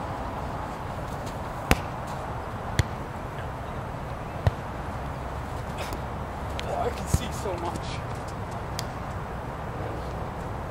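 Four sharp slaps of hands and forearms on a volleyball during a sand-court rally, the first three a second or two apart and the last about two and a half seconds later. A short voice call comes just before the last hit.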